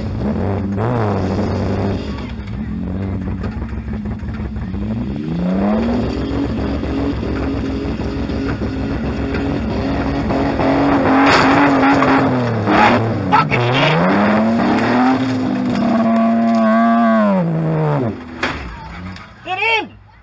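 Demolition-derby car's engine heard from inside the stripped cabin, revving up and down repeatedly as the car is driven. There are a few sharp knocks around the middle.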